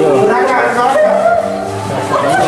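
People's voices talking in the room, with no clear words.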